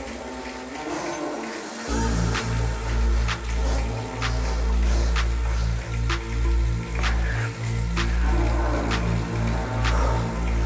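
Electronic workout backing music: a thinner stretch without bass, then heavy bass and a steady beat of about one hit a second come in about two seconds in.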